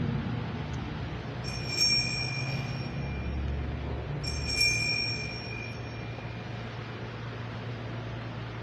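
Small altar bell rung twice, about three seconds apart, each ring fading over about two seconds: the bell that marks the elevation of the host after the consecration. A steady low hum runs underneath.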